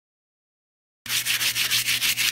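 A metal dish-scouring pad scrubbed quickly back and forth over an embossed metal sheet, rubbing dried black spray paint off the raised parts to antique the metal. The scrubbing starts suddenly about a second in, in fast scratchy strokes, several a second.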